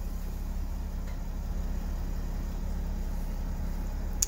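Mercedes-Benz Sprinter van's engine idling, a steady low hum heard from inside the cab.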